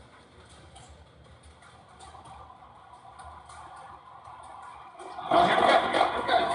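Faint room hum for about five seconds, then the soundtrack of a video played back in the room starts abruptly and loudly, with music, near the end.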